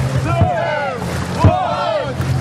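Repeated shouting voices over a dragon boat crew's paddles splashing in the water, with a low drum beat about once a second.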